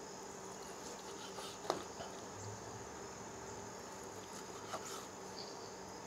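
Chef's knife slicing through a cooked ribeye, with a few faint taps of the blade on the wooden cutting board, the clearest about two seconds in. A steady faint high whine runs underneath.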